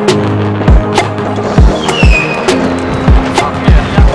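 Electronic dance music with a deep, pitch-dropping kick drum beat, sharp snare-like hits and a sustained bass, with a short falling synth tone about halfway through.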